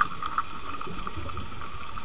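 Muffled underwater ambience picked up by a camera in a waterproof housing: a steady low hiss of water with a faint low rumble and a few small clicks.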